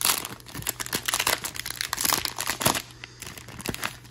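Plastic wrapper of a Topps Heritage baseball card pack crinkling as it is pulled open and handled: a rapid, irregular run of crackles, loudest at the start.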